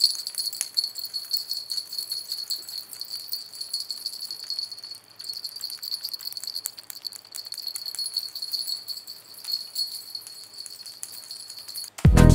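A small handheld object shaken close to a microphone, giving a continuous fine, high jingling rattle made of many tiny clicks. It is being recorded as raw material for a whoosh 'sweeper' effect.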